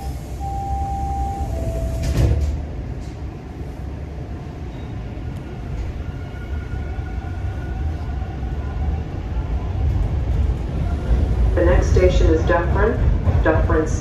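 TTC T1 subway train at a station: the door chime sounds in alternating high and low tones, and the doors close with a thump about two seconds in. The train then pulls away, its low rumble building, with a faint steady motor whine from about halfway.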